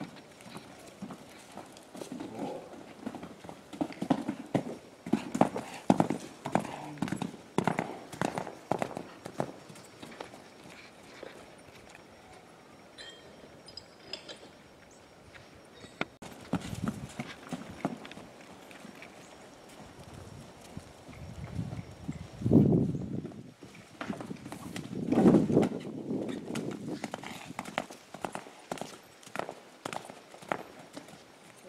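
A horse's hoofbeats on sand arena footing: an irregular run of dull strikes as the young mare moves around the arena, busiest in the first third and again past the middle. Two louder, low rushing sounds come near the end, about three seconds apart.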